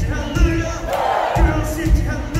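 Live country band playing over a steady drum beat, heard from among the audience, with the crowd yelling and cheering loudly about halfway through.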